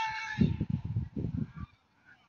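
A drawn-out shout from a person on or beside the pitch, held on one pitch and fading out in the first second. Gusty wind rumbles on the microphone underneath and dies away about a second and a half in.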